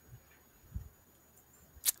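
A few faint low thumps, then a single sharp click near the end.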